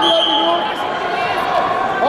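Voices shouting with rising and falling pitch, echoing in a large sports hall. A short, high whistle blast sounds right at the start: the referee's whistle starting a wrestling bout.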